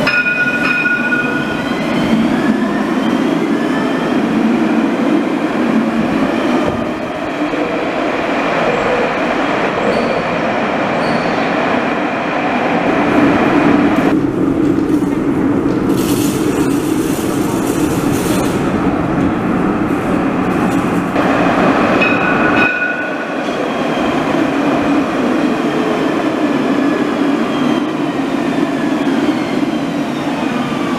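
Modern electric trams running through an underground station: a steady rolling rumble of wheels on rail with a faint rising whine from the motors, heard in several short cuts.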